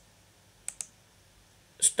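Two quick computer mouse clicks in close succession, about two-thirds of a second in, against a faint room background.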